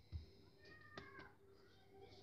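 A pet animal's faint, high, wavering cry, heard briefly from about half a second to just past a second in. A low thump just after the start and a sharp click about a second in.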